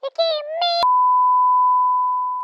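A high-pitched, synthetic-sounding voice chirps a few short pitched notes. Just under a second in, a click cuts it off and a steady single-pitch test tone starts and holds: the tone played with broadcast colour bars, marking the end of the programme.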